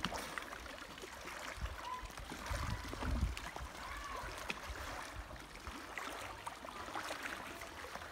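Pool water sloshing and splashing as a person swims slowly through it, with a few stronger splashes about three seconds in.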